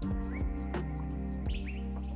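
Background music with a steady beat under held tones, with a few short rising chirping notes.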